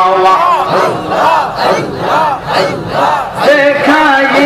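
A group of men chanting zikir together in loud, rhythmic calls, each call rising and falling in pitch, about two or three a second.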